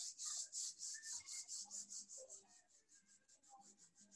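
Palms rubbed briskly together: a fast, dry swishing of about seven strokes a second, louder at first and fading toward the end.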